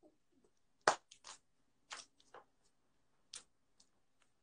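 A handful of short, soft clicks and rustles scattered over a few seconds, the loudest about a second in, from hands handling hair and a hat close to the microphone.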